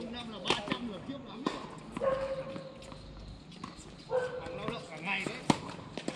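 Tennis balls struck by rackets in a doubles rally: a few sharp pops, the loudest about five and a half seconds in. Voices carry across the court, and two long calls, each held on one pitch for about a second, sound twice in the middle.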